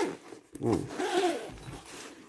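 Zipper on a padded fabric fishing-rod case being pulled shut in one run lasting about a second, starting about half a second in.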